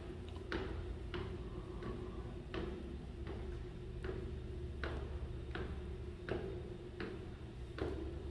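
Footsteps climbing a flight of stairs, one step about every 0.7 seconds, each a short sharp knock on the treads, over a steady low hum.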